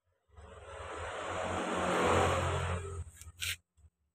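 Potting soil and roots rustling and scraping as a Calathea medallion is pulled out of its pot, swelling over about three seconds and stopping abruptly, with a short sharp crackle just before it ends.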